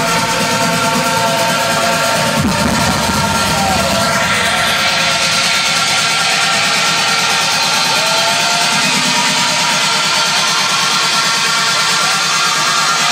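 Trance music played loud over a festival stage's sound system, heard from within the crowd. The deep bass drops out about five seconds in.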